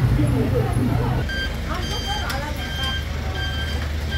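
A vehicle's reversing alarm beeping in an even series from about a second in, roughly one beep every two-thirds of a second, over a low engine rumble.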